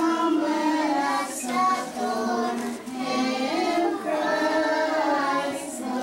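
Group of young children singing a song together, in phrases with short breaks between them.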